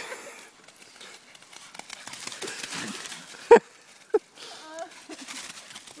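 A dog splashing in the shallow water at a pond's edge, a rushing noise for about a second in the middle, followed by one short, loud cry and a smaller one just after.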